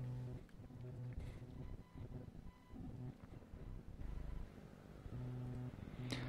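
Faint room tone with a low steady hum that fades in and out a few times; no distinct event.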